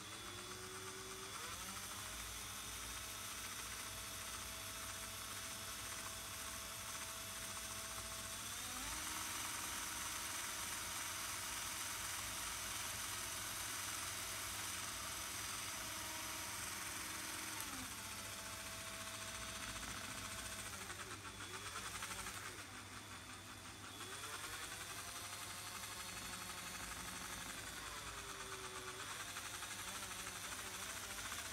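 Cordless drill spinning a model truck's drive shaft through two small differential axles, a steady motor-and-gear whine. Its pitch rises about a second in, steps up again near the 9-second mark, drops around 18 seconds, dips and recovers around 22 to 24 seconds, and falls near the end as the speed changes.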